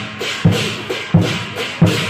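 Lion dance drum beaten in strong, even strokes about every 0.7 seconds, over a constant clash of cymbals.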